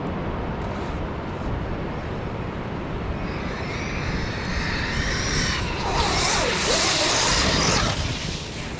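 Electric RC monster truck's brushless motor whining at speed, rising in pitch and growing louder from about three seconds in as it comes close, with pitch sweeping up and down as it accelerates and turns; it cuts off suddenly at the end.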